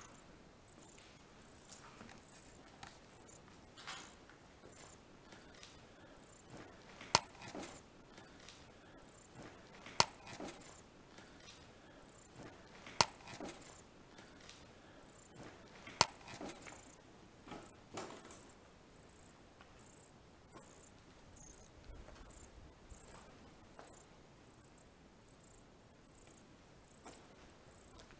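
Quiet room tone with a faint, steady high-pitched hiss, broken by four sharp clicks about three seconds apart in the middle of the stretch.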